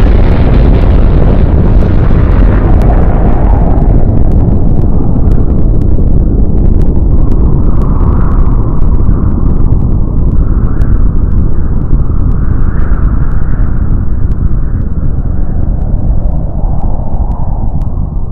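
Long, loud, deep rumbling roar of explosions and a collapsing building, continuous and without a break, with a few mild swells along the way.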